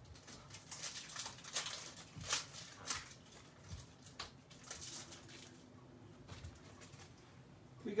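Trading-card pack wrapper being torn open and handled: a run of crisp crackles and clicks in the first few seconds, then quieter handling.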